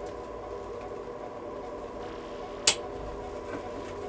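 A steady electronic drone of several held tones, with one sharp click about two-thirds of the way through.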